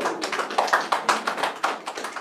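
A small group of people applauding: quick, irregular claps.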